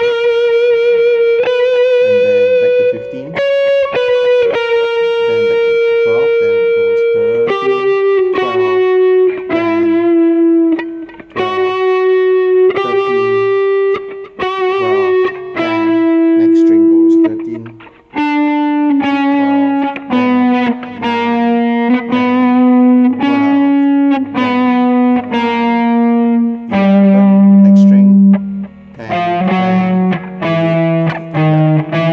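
Distorted electric guitar playing single notes slowly, one at a time, each held and ringing. The line steps down in pitch over the whole stretch: a neoclassical tab lick worked through note by note.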